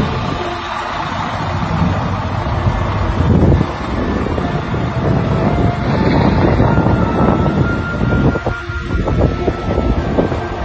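Semi-trailer rolling slowly under a trailer snow scraper, a steady rumble as the scraper blade pushes the snow off the trailer roof.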